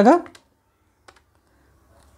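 Keys of a Casio MJ-120D desktop calculator being pressed: a few soft, short clicks, most of them about a second in.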